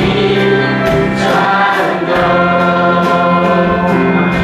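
A group of voices singing a Mandarin worship song with a band: held chords under the singing and regular percussion hits.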